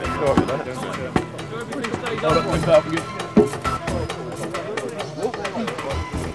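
Several men's voices calling out indistinctly over background music, with a few sharp knocks.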